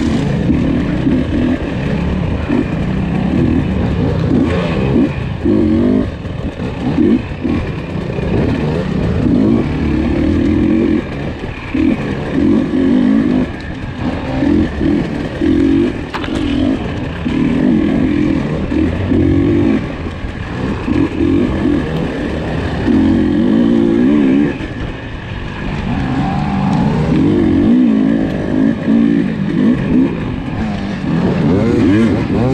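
KTM 300 XC two-stroke dirt bike engine, heard from the rider's seat, revving hard and backing off over and over as the throttle is opened and closed in short bursts.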